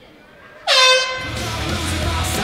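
A loud air-horn blast starting about two-thirds of a second in, one held tone that slides down briefly at its start, followed about half a second later by loud rock music with heavy bass and guitar.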